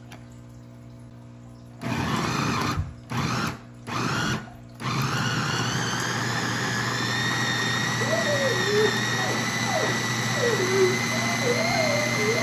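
Electric food chopper with a glass bowl mincing vegetables. Its motor is pulsed three times in short bursts starting about two seconds in, then held on to run continuously with a steady whine.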